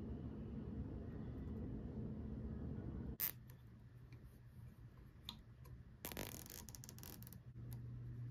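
Faint handling of rubber vacuum hoses on a turbocharger's wastegate line, with a sharp click about three seconds in. About six seconds in, a nylon zip tie is pulled tight around the hoses, giving a rapid ratcheting zip that lasts over a second.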